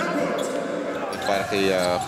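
A basketball bouncing on a hardwood court during a live game, under a commentator's voice.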